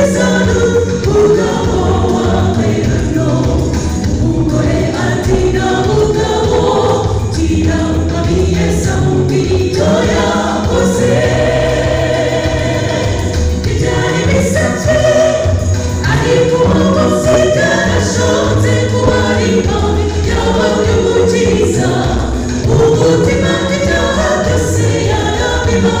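A choir singing a gospel song together, many voices in continuous full song.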